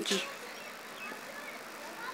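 A woman's voice finishes a word, then a pause of nearly two seconds holds only faint, steady background noise.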